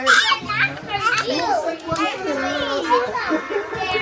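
Several young children's voices at once, chattering and calling out over one another in high, gliding tones.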